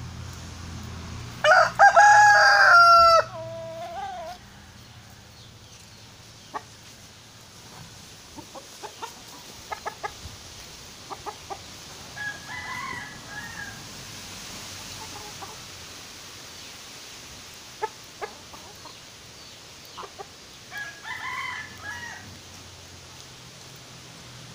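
A rooster crows once, loud and about two seconds long, trailing off in a falling note. Hens then cluck softly twice, with scattered light clicks in between.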